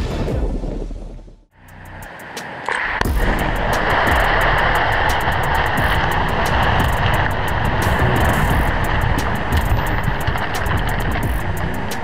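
Rockslide coming down a steep hillside: rocks and debris tumbling with a continuous rushing rumble, starting about three seconds in after a brief near-silent gap.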